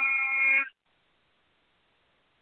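A man's voice chanting a Sanskrit stotra, holding the last syllable of a verse line on one steady note that cuts off less than a second in.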